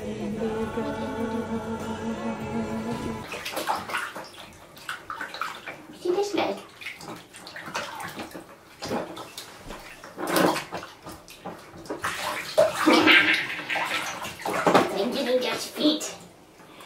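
Music with a held tone for the first three seconds or so. It is followed by water splashing and sloshing in a shallow bathtub as a baby moves about in it, in a series of irregular splashes, loudest around the middle and near the end.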